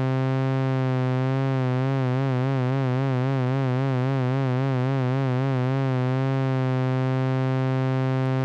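One held low synthesizer note from a SynthMaster 2.9 patch, steady in loudness. Mod-wheel-controlled vibrato swells in about a second in, wobbles the pitch most strongly mid-way, then fades out to a plain, steady note near the end.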